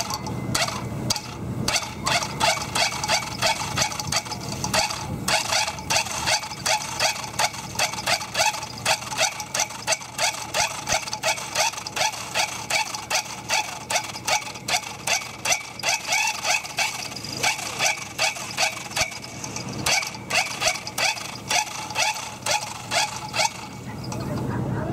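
A dog barking in short, high yips over and over, at about two a second without a break.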